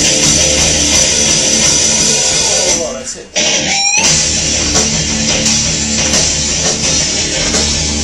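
Heavy metal song part with distorted electric guitar played back loud in the studio, the requested passage with pinch harmonics. The music breaks off for a moment about three seconds in, then a high squealing note bends in pitch before the full band comes back in.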